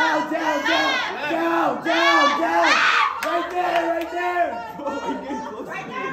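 A group of people shouting and calling out together, overlapping high-pitched voices, loudest about two to three seconds in and easing off toward the end.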